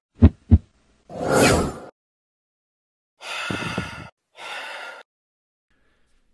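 Logo-animation sound effects: two sharp thumps, then a swelling whoosh, then after a pause two short breathy rushes of noise.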